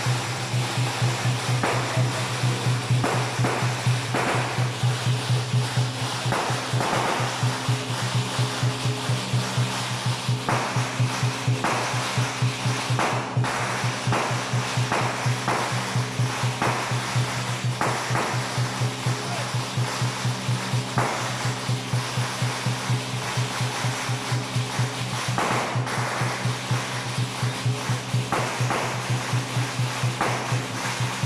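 Temple-procession percussion: a drum beating a steady fast rhythm, about three beats a second, under a constant wash of cymbals.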